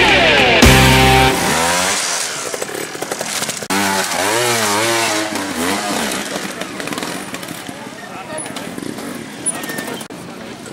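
Loud rock music cuts off about a second in. Then a trials motorcycle engine revs up and down in repeated throttle blips as it climbs a steep section, growing fainter toward the end.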